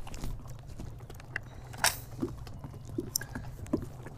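Wind rumbling on the microphone, with scattered small clicks and rustles of a sheet of paper being handled, and one sharper click about two seconds in.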